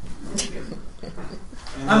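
Indistinct voices and laughter from audience members in a small room, quieter than the presenter's speech, with a short click about half a second in.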